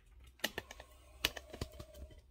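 Handling noise: a few sharp, irregular clicks and crackles, the loudest about half a second and a second and a quarter in.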